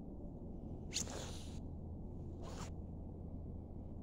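A steady low rumble on the phone microphone, with two short hissing rustles about a second and two and a half seconds in.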